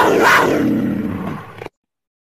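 Segment-transition sound effect: a loud, noisy rush with a low pitched undertone, fading away and cutting off suddenly near the end.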